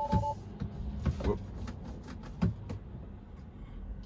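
A short two-tone chime from a Tesla's cabin speakers, lasting about a third of a second, most likely the alert as Full Self-Driving Beta disengages. A steady low cabin hum runs under it, with a few light clicks.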